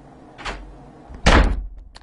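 A wooden room door slammed shut with a loud bang about a second and a quarter in, with a softer knock about half a second in and small rattles just after.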